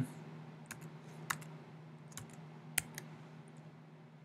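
Computer keyboard keys being typed, a handful of separate keystrokes spaced about a second apart, entering a short list of numbers, over a faint steady low hum.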